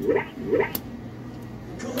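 Arcade room noise: a steady hum of machines under short snatches of voice, with a single sharp click a little under a second in.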